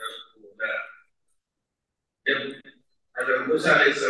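A man's voice lecturing into a microphone in short phrases. It stops for about a second after the first second and again briefly before speech resumes at length near the end.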